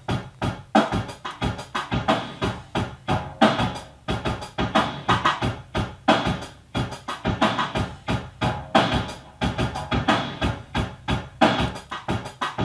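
Drum machine playing a programmed electronic beat, a steady, even run of drum hits several times a second, with synthesizer sounds layered over it.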